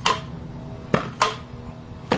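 Pogo stick landings: three sharp knocks, one right at the start and two close together about a second in, with a faint ringing hanging on between them.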